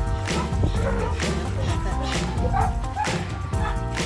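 Background music with a steady beat, with a dog barking briefly over it about half a second in and again past the middle.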